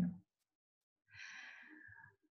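A single soft, breathy sound, a person's audible breath, lasting about a second from halfway through. It follows the clipped end of a spoken word at the very start.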